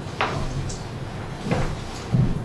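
Two short knocks or bumps in the meeting room, a little over a second apart, over the room's background noise.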